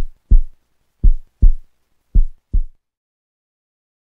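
Heartbeat sound effect: deep double thumps about once a second, stopping abruptly a little under three seconds in, followed by silence.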